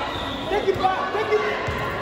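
A football kicked and bouncing on a hard indoor floor, a few sharp thuds echoing around a large sports hall, with players' and onlookers' voices calling out.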